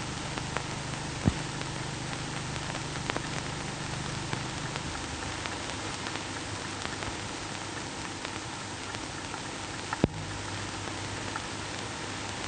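Steady hiss and crackle of an old optical film soundtrack, dotted with small clicks and a few louder pops. A low hum underneath drops out about five seconds in and comes back near the end.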